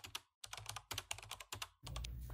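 Keyboard typing sound effect: quick, quiet key clicks in two runs with a short pause between, as on-screen text is typed out letter by letter.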